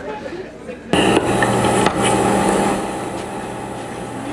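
A steady electronic noise with a low hum and hiss, cutting in suddenly about a second in and easing off after the halfway point.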